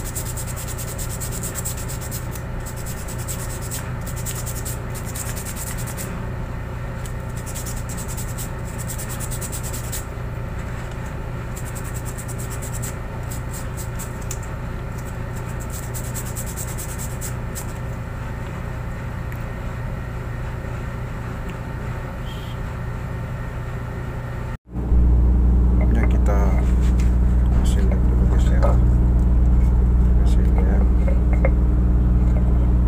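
Scratchy rubbing and handling of a rubber sheet being cut into letters, over a steady electrical hum. Near the end, after a sudden cut, a much louder steady low rumble of ship's machinery with faint voices.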